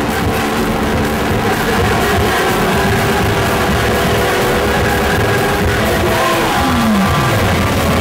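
Live indie rock band playing an instrumental stretch with no singing. Near the end, a note slides down in pitch.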